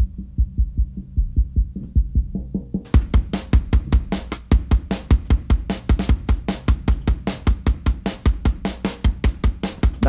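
Programmed Groove Agent drum-machine groove playing steadily while its low band is boosted to add punch. For about the first three seconds only the low end is heard, kicks and low thuds with the highs cut away. Then the full kit comes in with bright hi-hat and snare hits.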